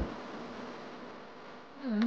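Steady, even rushing noise of air and road from a moving car, picked up by a phone held at the open window. A voice starts right at the end.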